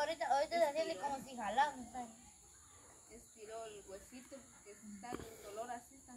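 Several people talking casually, louder in the first two seconds and quieter after. A faint, steady high-pitched whine runs underneath.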